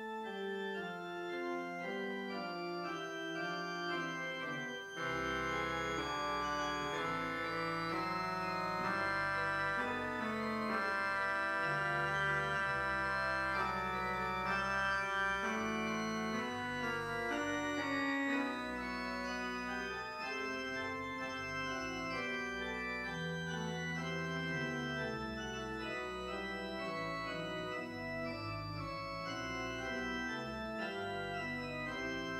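Organ playing slow music in sustained chords; about five seconds in a deep bass line comes in and the music grows louder, easing back a little past the middle.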